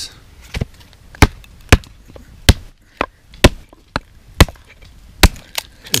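A small axe splitting a piece of dry firewood on a wooden board: about ten sharp wooden knocks, roughly two a second.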